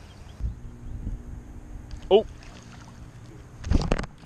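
Low rumbling wind and handling noise on a body-worn camera microphone while a lure is worked from the bank, with a short exclaimed 'oh' about halfway through. Near the end comes a loud, sharp rush as the rod is swept back to set the hook on a striking bass.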